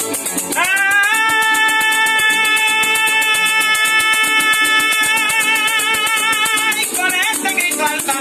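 A man's singing voice slides up into one long held note and sustains it for about six seconds, ending in a short wavering turn, over Venezuelan llanera music of harp and maracas with a steady rattling rhythm.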